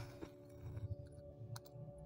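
Small metal charms clinking faintly as a hand stirs through them in a glass dish, with a couple of sharper clicks about one and a half seconds in.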